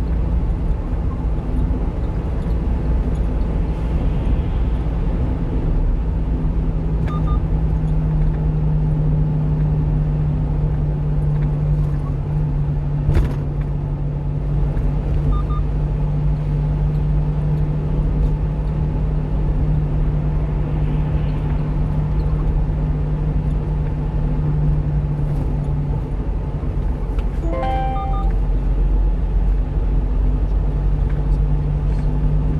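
Steady engine and road drone inside the cab of a 1-ton refrigerated box truck under way, with a constant low hum. There is one sharp click about 13 seconds in, and a short run of electronic beeps near the end.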